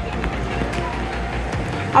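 Water-park ambience: a steady wash of noise with low rumble, and faint voices and music in the background.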